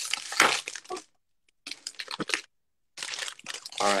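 Foil Pokémon booster pack being torn and crinkled open by hand, a pack that is hard to open. The crinkling comes in three short spells with brief pauses between.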